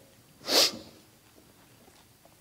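A man's single short, sharp breath close to a microphone about half a second in, followed by faint room tone.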